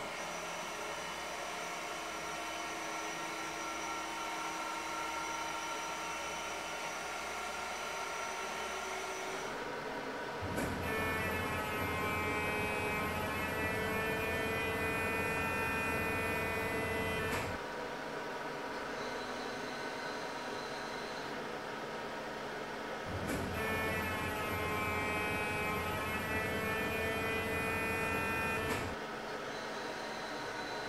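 Medical linear accelerator (LINAC) humming steadily with several fine whining tones as its gantry moves around the couch. Then come two louder spells with a deeper hum, about seven and six seconds long, as the machine delivers the radiotherapy treatment beam.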